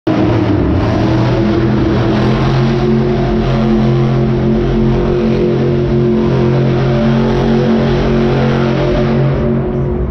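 Monster truck's supercharged V8 engine held at high revs as the truck spins doughnuts on the dirt. The engine note is loud and nearly steady throughout.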